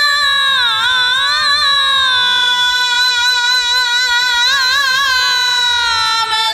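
A woman singing one long drawn-out note of a Bengali devotional kirtan, her voice bending and wavering in ornaments, over harmonium accompaniment.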